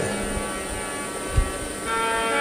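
Steady electrical hum from a public-address sound system during a pause in the talk. A soft low thump comes about 1.4 s in, and a second steady hum tone joins near the end.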